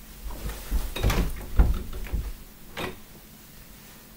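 A string of thumps and knocks as a person walks up to a wooden interior door and tries its knob, which is locked. The loudest knocks come a little after a second in, with a last one near three seconds.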